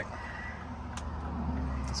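Low steady hum of a truck's engine heard inside the cab, with a single sharp click about a second in.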